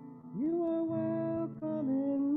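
A slow sung melody over acoustic guitar: the voice glides up into one long held note about half a second in, then moves to two shorter notes near the end.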